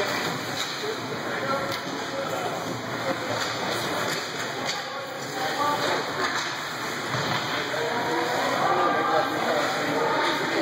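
Indistinct voices of players and spectators echoing around an indoor ice rink during a youth hockey game, with a few sharp clacks of sticks and puck on the ice.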